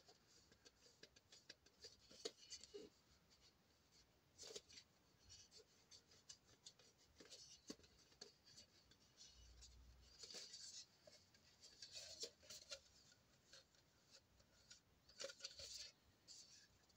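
Faint scratching and light ticks of fingers and fingernails pressing and rubbing on the thin sheet metal of a phonograph horn, working out a dent by hand.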